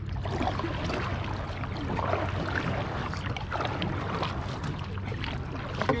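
Water lapping and paddles splashing against dragon boats sitting at rest, with scattered knocks, wind rumbling on the microphone and faint crew chatter in the background.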